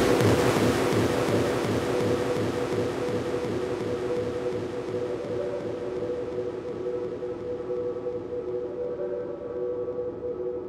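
Electronic dance track in a breakdown: the drums drop out, leaving a hissy wash of noise over two steady held synth tones. The top end of the wash slowly dulls and the whole sound fades gradually.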